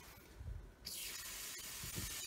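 Kitchen tap turned on about a second in, after a soft low bump: water then runs in a steady hiss into a stainless-steel sink over an inkjet printer's capping module held under the stream to rinse the ink out.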